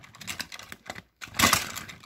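Small plastic clicks and rattles of a Tomy toy engine and wagons being handled and pushed together to couple on plastic track, with a louder clatter about one and a half seconds in.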